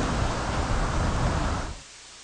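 Steady hiss of signal noise with no tone or rhythm in it, dropping away to a much quieter level about a second and a half in.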